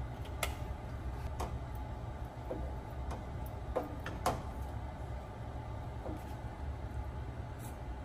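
A wooden spoon stirring a creamy sauce in a metal pan, knocking lightly and irregularly against the pan about a dozen times, over a steady low hum.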